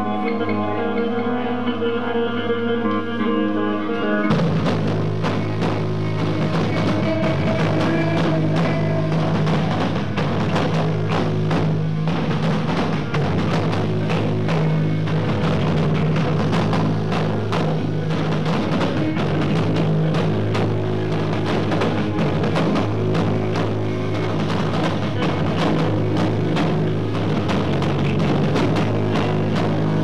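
Live screamo band: held guitar notes ring out for about four seconds, then the full band comes in with pounding drums and distorted guitars. The camera's microphone overloads, so the sound is distorted.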